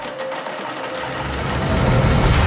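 Trailer score music under the title reveal: the bass drops out briefly just after the start, then returns and the music swells louder toward the end.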